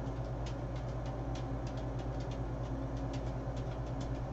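A steady low background hum with faint, scattered light ticks over it.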